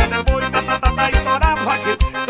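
Forró music: an accordion-toned lead melody over a steady, driving kick-drum beat, with bass and keyboard accompaniment.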